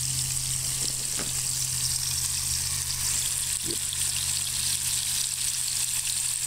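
Catfish fillets frying in hot oil in a frying pan over a wood-fired hobo stove: a steady, even sizzle, with a steady low hum underneath and a couple of faint ticks.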